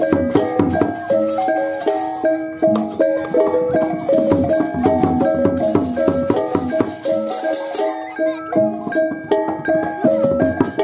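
Balinese gamelan playing barong accompaniment: bronze metallophones ringing in quick interlocking note patterns over drums and small clashing cymbals.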